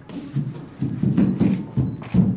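A group of young men shouting and laughing in excitement, with sharp knocks mixed in and the loudest stretch past the middle.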